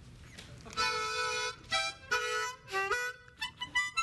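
Harmonica playing a short blues phrase: after about a second of quiet, two held chords, then a step up in pitch and a quick run of short notes near the end.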